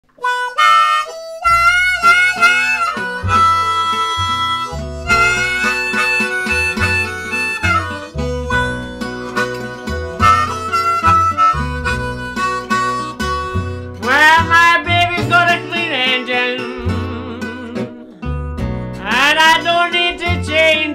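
Blues harmonica, cupped in the hands, playing the song's instrumental intro over two guitars and an upright bass. The harmonica starts alone, and the bass and guitars come in about a second and a half in. The harmonica bends notes upward about two thirds of the way through and again near the end.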